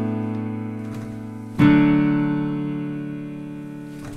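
Piano chords on a keyboard: one chord rings on and fades, then a second chord is struck about one and a half seconds in and dies away slowly. They are backing chords left for a learner to sing a vocal run over.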